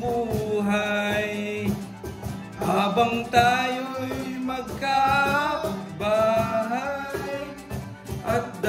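A voice singing held, wavering notes in phrases of a second or two over steady instrumental backing music.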